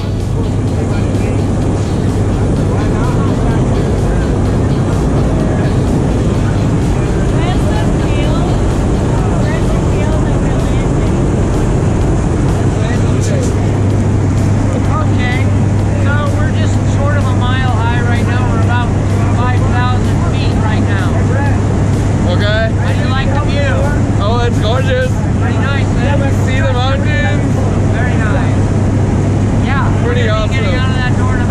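Steady, loud drone of a small jump plane's propeller engine in the climb, heard from inside the cabin.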